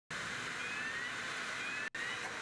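Boeing 737 airliner's jet engines running at idle as it taxis in: a steady hiss with faint rising whines. The sound cuts off abruptly just before the end.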